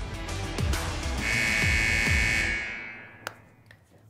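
Short electronic music sting for a segment transition: deep booming hits under a bright sustained synth chord, fading out about three seconds in, then a single click near the end.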